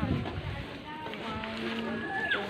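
Low rumble of wind and handling on a phone's microphone as it is swung down, strongest in the first half-second, with faint chatter from a group of people around it.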